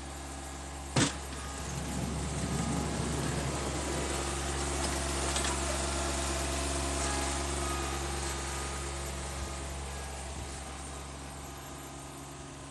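John Deere F935 front mower's diesel engine running steadily, with one sharp knock about a second in. The engine grows louder from about two seconds in and eases off again toward the end.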